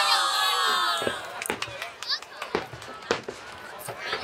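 A crowd of spectators cheering and shouting over the first second, then aerial fireworks going off as a run of sharp, separate bangs, about five over the next three seconds.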